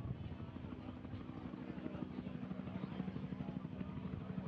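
A steady low hum with a fast, rough buzz and faint background murmur, the open line of a launch-commentary audio feed between calls.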